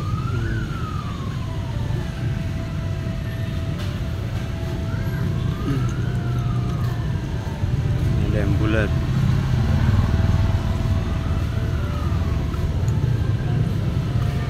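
A distant siren wailing in three slow rises and falls, about five seconds apart, over a steady low rumble of road traffic.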